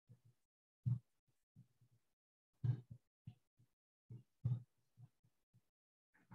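Faint, soft low thuds every second or two from body and leg movement on an exercise mat during side-lying leg lifts.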